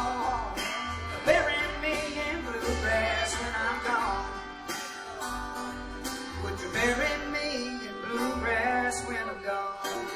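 Live acoustic string band playing: a fiddle melody over strummed acoustic guitar and plucked upright bass notes.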